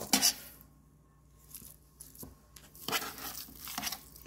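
Ground venison being pressed down by hand into a stainless-steel sausage-stuffer canister to pack out air pockets: soft, irregular squishing and handling noises, with a sharp click against the metal a little after two seconds.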